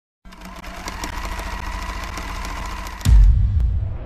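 Intro sound effect: a rapid mechanical clatter with a steady high hum, slowly building, then a loud deep boom about three seconds in that dies away.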